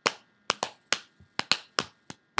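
Finger snaps in an uneven beat, about seven sharp snaps in two seconds with quiet between them.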